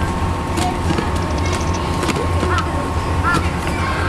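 Capybara gnawing a wooden log, its incisors scraping and clicking against the wood in scattered short strokes, over a steady low background rumble.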